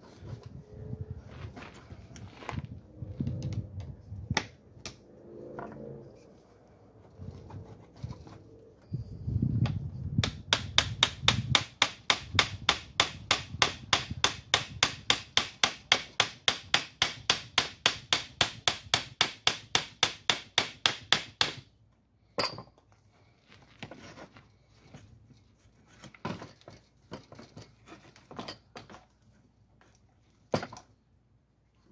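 Hammer tapping on a steel car vent-window frame: a few scattered knocks at first, then a fast, even run of sharp metal strikes, about four a second, for roughly ten seconds, then one harder single strike.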